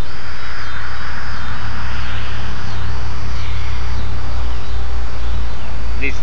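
A radio-controlled model plane's motor and propeller droning in flight, swelling and then fading over the first few seconds, over a steady low rumble. It is flying at about three-quarters throttle, which the builder thinks is underpowered with too small a propeller.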